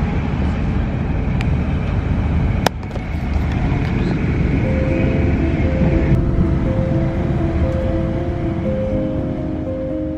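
Steady rumble of a moving passenger train heard from inside the carriage, with a sharp click about two and a half seconds in. Background music with held notes comes in about halfway and plays over the rumble.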